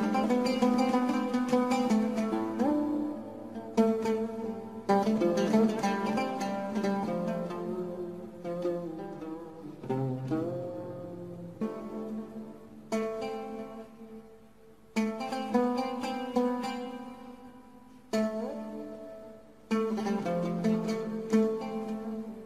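Instrumental music on a plucked string instrument: phrases of picked notes that ring and fade, broken by short pauses before each new phrase.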